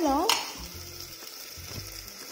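Chopped onions and tomatoes sizzling in hot oil in an open aluminium pressure cooker, a steady soft frying hiss.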